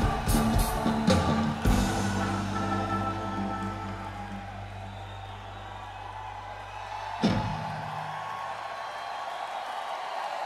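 Live rock band: drum and cymbal hits in the first couple of seconds, then a held chord that rings out and slowly fades. A single crash hit comes about seven seconds in, leaving a fading low tone.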